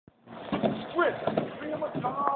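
Indistinct voices, pitched and bending rather than clear words, over a steady background noise.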